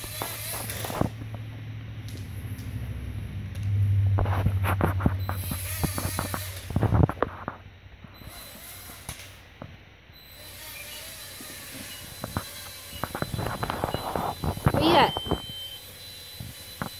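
Small toy quadcopter drone's motors humming steadily for about seven seconds, with clicks and knocks as it skids on a wooden floor, then cutting off suddenly. Scattered light clicks and rustles follow.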